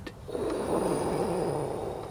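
A mouth-made whooshing flying noise for a toy rocket: one long breathy whoosh that swells about half a second in and slowly fades.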